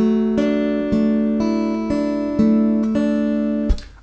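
Steel-string acoustic guitar fingerpicked slowly, one note about every half second, the notes ringing on together as a broken chord: a thumb-and-fingers picking pattern. The strings are damped with a short thump near the end.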